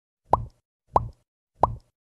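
Three identical pop sound effects, each a quick upward-sweeping "bloop", about two-thirds of a second apart.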